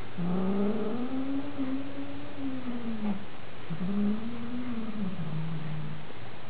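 A cat yowling: two long, drawn-out calls, each rising and then falling in pitch. The second ends on a lower, held note.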